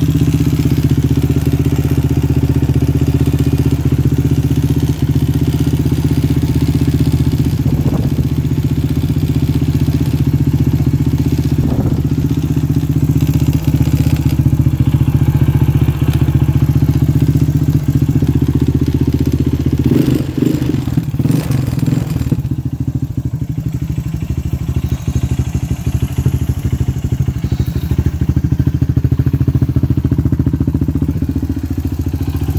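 A 2003 Honda TRX250EX quad's single-cylinder four-stroke engine idling steadily and running well. There is a short run of knocks or clatter about twenty seconds in.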